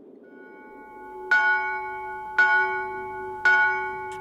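A bell struck three times, about a second apart, each stroke ringing on and fading, over a faint hum that swells in the first second.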